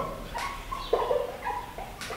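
Dry-erase marker squeaking in short, faint, irregular squeaks as it is drawn across a whiteboard.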